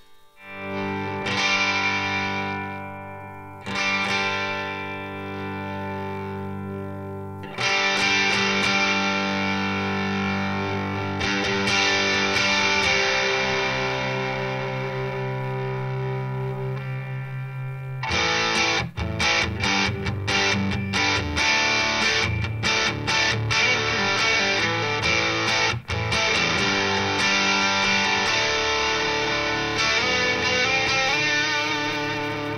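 Electric guitar (a Nash T-57 Telecaster) played through a Skreddypedals Screw Driver overdrive pedal into a Morgan RCA35 amp: distorted chords are struck and left to ring, then choppier rhythm playing follows over the second half. The pedal's gain is turned up along the way, giving more drive and sustain.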